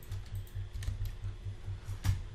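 A few sharp clicks of computer keys, the loudest near the end, over a low pulsing hum.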